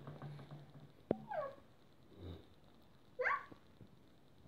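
A young child's two short, high vocal squeals, the first falling in pitch and the second rising. A sharp click comes about a second in, just before the first.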